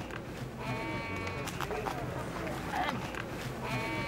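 Livestock calling in a market: two long, drawn-out cries, the first about half a second in and the second starting near the end, over a murmur of voices.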